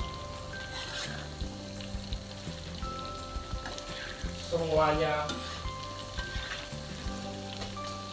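Tofu deep-frying in hot oil in a wok, sizzling steadily, while a spatula stirs and turns the pieces.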